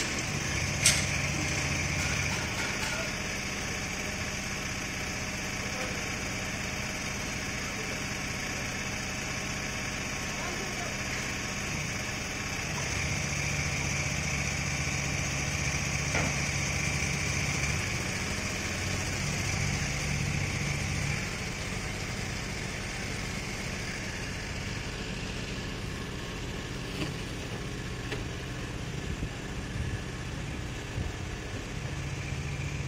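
An engine running steadily, with a deeper hum joining in for a few seconds at a time, twice. There is a single sharp knock about a second in.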